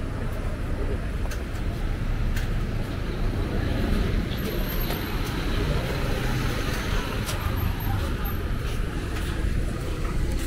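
Busy street traffic: cars and motorbikes passing close by, a steady rumble of engines and tyres.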